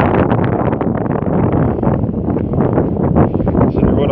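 Wind buffeting the microphone: a loud, steady rushing noise with many short crackles.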